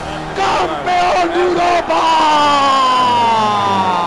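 An excited voice crying out in long drawn-out calls, the last held for about two seconds and slowly falling in pitch.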